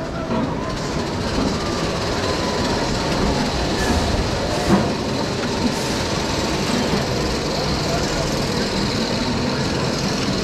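Rocky Mountain Construction single-rail roller coaster train rolling along the track into the station at the end of the ride: a steady rumble of wheels on the rail, with a few sharp clicks near the middle.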